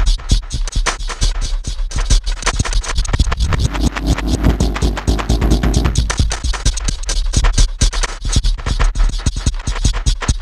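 Alchemy software synth in granular mode playing a sampled drum beat loop broken into grains: a dense stutter of rapid clicks over a steady deep low end. Its grain size and density are being slowly swept by two LFOs, and the midrange swells fuller about halfway through.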